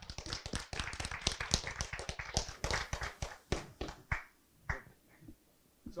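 Applause from a small audience: dense clapping at first, thinning to a few scattered claps and dying out about five seconds in.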